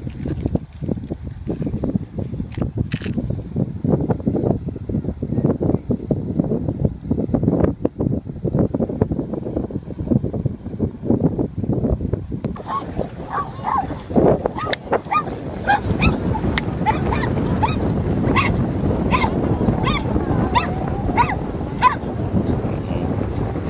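Low, uneven wind rumble on the microphone. From about halfway through, a run of short, pitched animal calls repeats every half second to a second.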